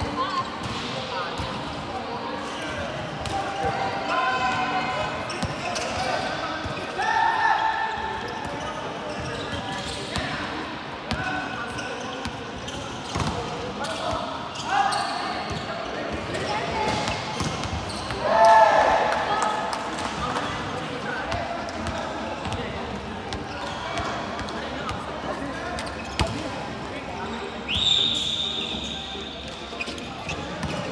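A volleyball being struck and bouncing on a hard sports-hall floor, with sharp knocks throughout and players' shouted calls echoing around the large hall. Near the end there is a brief high squeal.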